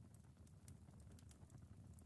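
Near silence, with a fireplace crackling faintly in irregular small clicks over a low rumble.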